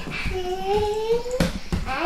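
Children's bare feet thudding and landing on a wooden floor, with a couple of sharper knocks about one and a half seconds in. Over it, a child's voice holds one long, slightly rising note.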